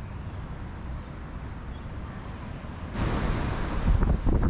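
Small bird singing a run of quick, high chirps over a steady low rumble on the microphone; the rumble grows louder about three seconds in.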